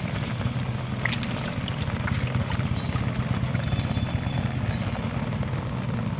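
A motor running steadily with a low, even hum, over a few faint clicks and rustles from a cast net being picked over by hand.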